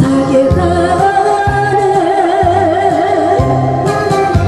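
A woman singing a Korean trot song into a microphone over amplified accompaniment with a steady bass beat, holding a long note with wide vibrato through the middle.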